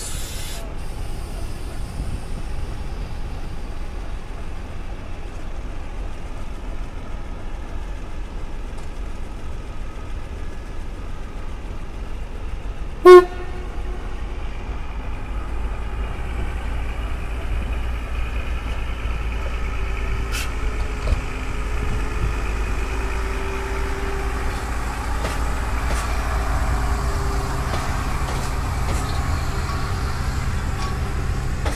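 A diesel train's horn gives one short, loud blast about 13 seconds in. After it a diesel engine's low rumble and steady drone build up, with the running noise of passing coaches rising toward the end.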